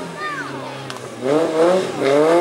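Small hatchback slalom race car's engine running through a cone chicane: the revs sit low for about a second, then climb steeply as it accelerates, with a brief dip near the end like an upshift.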